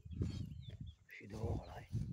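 Footsteps on grass with handling noise from a handheld phone while walking: low thumps about twice a second. A brief indistinct voice sound comes in the middle.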